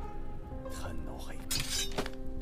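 Film soundtrack: a held music chord under a man's spoken line, then, near the end, a brief bright metallic swish of a short blade being drawn from its sheath.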